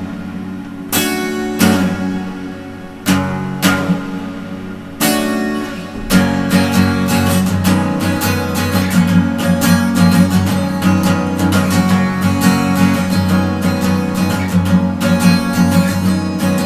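Acoustic guitar playing an instrumental intro: a few single strums left to ring out, then from about six seconds in a steady, continuous strumming rhythm.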